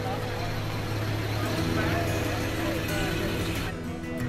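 Background music of long held notes over the indistinct chatter of a group of people, with the low steady hum of a vehicle. The sound changes abruptly about three-quarters of the way through.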